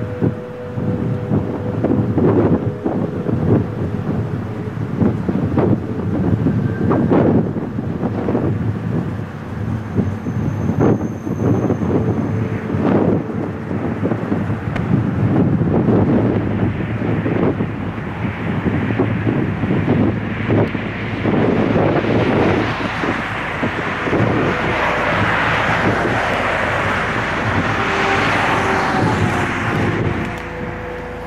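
Four-engine Airbus A340's jet engines running close by, growing louder from about two-thirds of the way in, with wind buffeting the microphone throughout.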